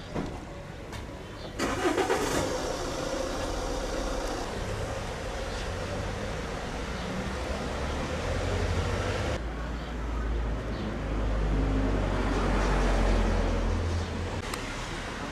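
Street sound with a car engine running nearby: a sudden louder noise about a second and a half in, then a steady hum, and a low engine rumble that grows louder in the second half.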